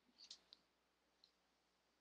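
Near silence: faint room tone with three small, faint clicks in the first second and a half.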